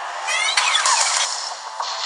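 Added sci-fi sound effect: a burst of quick rising pitch sweeps that turn into falling ones, lasting about a second, laid over the soundtrack music.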